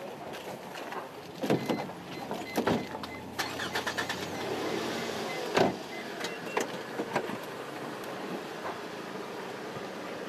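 Knocks and handling at a car door, with a short run of beeps from the car about two seconds in. The door shuts with a thump about halfway through, the loudest sound, over a steady low car and street hum.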